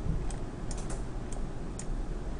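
About seven irregular keystrokes on a computer keyboard, with a quick run of them about a second in, over a steady low hum.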